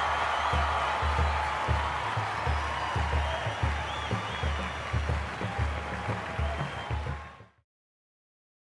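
Stadium crowd applauding and cheering, with irregular low thumps underneath; the sound cuts off suddenly near the end.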